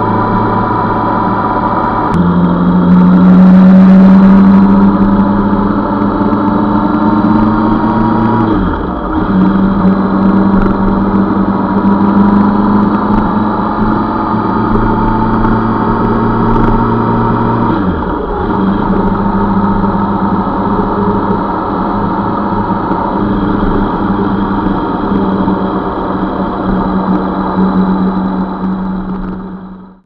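Motorcycle engine running at steady revs, heard from a camera mounted on the bike; twice the revs dip briefly and come back, as the throttle is eased and opened again. The sound fades out at the very end.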